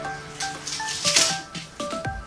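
Background music with a plinking stepped melody, and over it a rustling, crackling burst from about half a second in, loudest just past a second: a fabric curtain being pulled down from where it was taped up.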